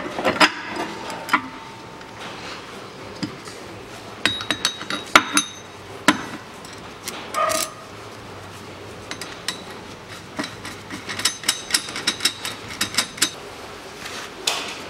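Steel parts of a bushing-press tool clinking as a cup-shaped mandrel and nut are fitted onto a threaded stud: scattered sharp metallic clicks, bunched about four seconds in and again near the end.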